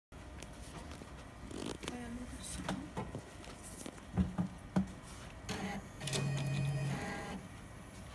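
Digital UV printer mechanism at work: scattered clicks and knocks, then a steady motor hum from about six to seven seconds in.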